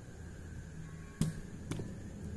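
Two short sharp clicks about half a second apart, a little past the middle, over a low steady room hum.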